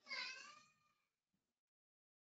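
A single faint, high-pitched call about a second long at the very start, its pitch falling and then levelling off before it fades.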